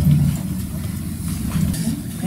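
A steady low rumble of background noise, without clear speech.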